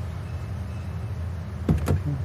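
Steady low engine rumble of a car idling. Two short sharp sounds with falling pitch come near the end.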